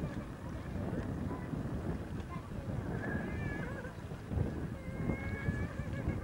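Wind rumbling on a VHS camcorder microphone, with faint distant voices.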